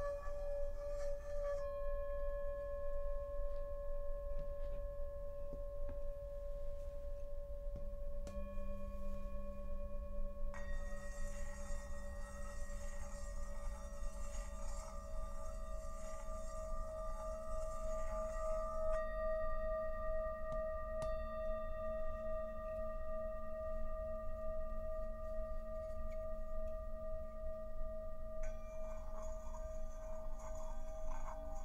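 Several Himalayan singing bowls ringing together in long, overlapping sustained tones that waver slowly as they beat against each other. Fresh strikes add new tones: a lower one comes in about 8 seconds in, a cluster of brighter ones a couple of seconds later, and more near the end.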